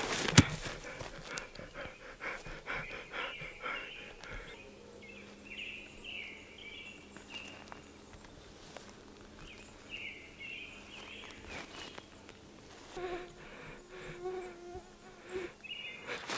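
Quiet woodland ambience with an insect buzzing steadily through the middle. A burst of rustling and footsteps on grass and undergrowth comes in the first few seconds, with scattered faint chirps.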